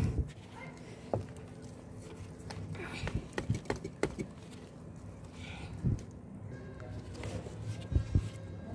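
Scattered soft knocks and taps as hands work a small black plastic nursery pot held upside down, loosening the root ball to slide the plant out. A quick run of taps comes in the middle, with a single thump a little later.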